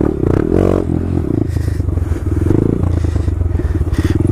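Honda Grom's single-cylinder four-stroke engine revving briefly about half a second in, then running steadily at low revs as the bike rolls along a rough dirt trail.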